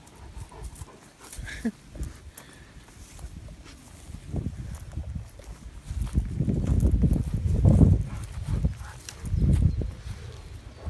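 A Great Dane right at the microphone, heard as a muffled, rumbling noise that builds from about four seconds in. It is loudest around seven to eight seconds and comes back once more near the end.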